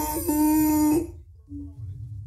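A voice singing in a worship song, holding one long note that stops about a second in, then a shorter, softer held note near the end.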